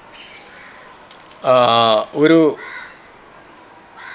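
A man's voice: a long drawn-out 'aah' about halfway through, then a short word, over a low steady outdoor background.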